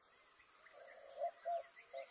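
Faint natural ambience: a steady, high insect-like buzz, with a handful of short, low calls starting about two-thirds of a second in.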